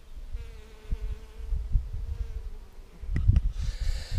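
Honeybees buzzing as they work flowering buckwheat, with one bee humming steadily close by for about two seconds. A low rumble runs underneath, and a couple of sharp clicks come near the end.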